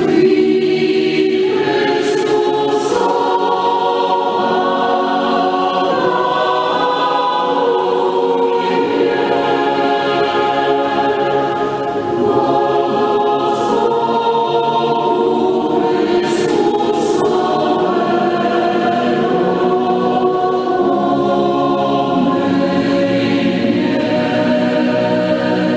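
A choir singing slowly, in long held chords that change every second or two.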